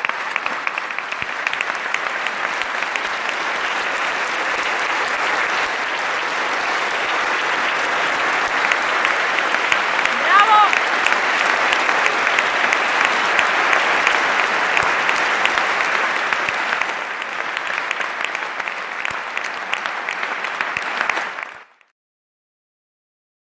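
Audience applauding steadily in a hall, with one brief voice calling out above the clapping about halfway through; the applause cuts off suddenly near the end.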